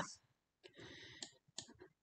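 Faint computer mouse clicks over a soft rustle, with two sharper clicks a little past a second in, as the on-screen offset setting is adjusted.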